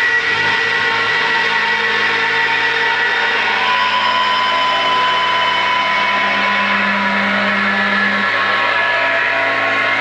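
Live electric guitars and bass holding a loud, noisy drone of sustained distorted notes and feedback, with no drumbeat. Held tones enter and fade slowly, and a low note sounds from about a second and a half in until about eight seconds.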